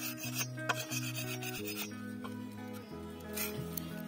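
Machete blade scraping the rind off a stalk in a few separate strokes, over background music.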